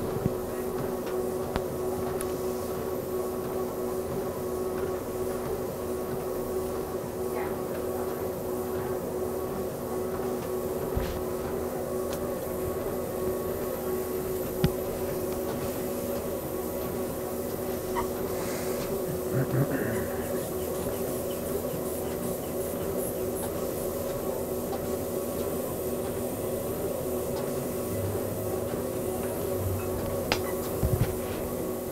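Motorised treadmill running steadily under a walking stress-test patient, its motor and belt giving a steady hum with several fixed tones. A few brief knocks stand out, the sharpest about halfway through.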